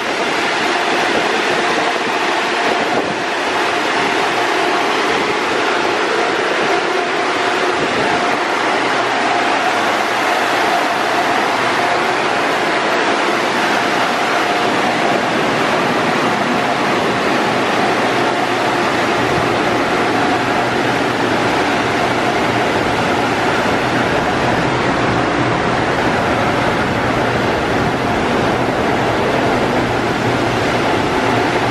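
Car wash blower dryers on the overhead gantry running at full blast, a loud, steady rush of air with a constant whine. A lower hum joins about a third of the way in.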